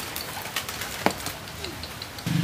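Quiet outdoor background with a bird calling faintly, including one short sharp call about halfway through.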